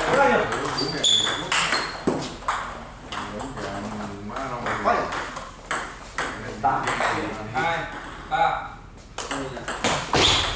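Table tennis ball repeatedly clicking off rubber-faced bats and bouncing on the table during rallies, short sharp pings at an irregular pace, with people talking and the score being called.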